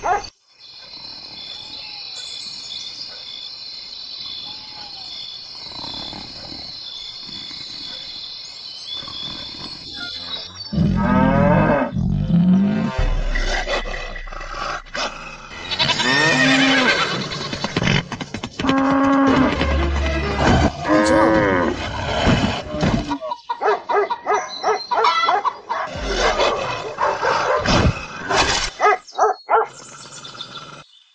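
Added animal sound effects over music: a steady high-pitched drone for about the first ten seconds, then from about eleven seconds a busy mix of big-cat roars and cattle lowing.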